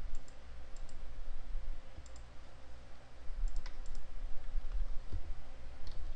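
Computer mouse clicks, a few faint single and double clicks spaced every second or so, over a steady low rumble and faint hum.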